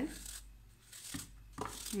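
A small knife slicing thin pieces off a peeled apple held in the hand: faint, crisp cuts through the firm fruit, a couple of them in the second half.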